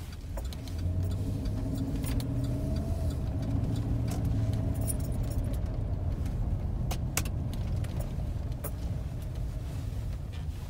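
Sheriff's patrol car driving, heard from inside the cabin: a steady engine and road rumble whose engine drone swells about a second in, with a few light clicks and rattles.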